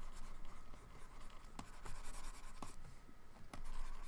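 Faint scratching of a pen stylus being stroked quickly across a graphics tablet, with a few light taps, as a mask is brushed in by hand.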